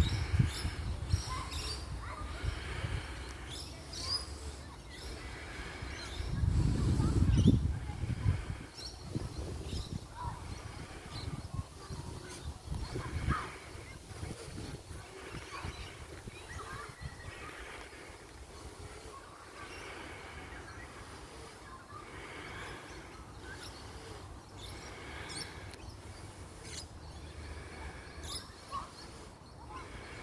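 A flock of corellas foraging on the ground, giving scattered short calls. A low rumble rises about six seconds in and fades by eight.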